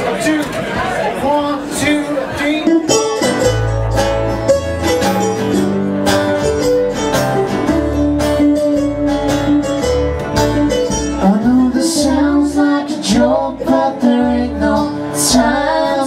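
Live country band playing: strummed acoustic guitars over plucked upright double bass, the full band coming in about three seconds in.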